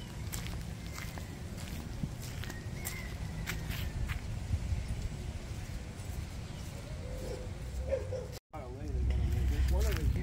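Outdoor ambience: a steady low rumble with scattered faint clicks and a few short high chirps. After a sudden cut near the end, the rumble is louder and a brief voice is heard.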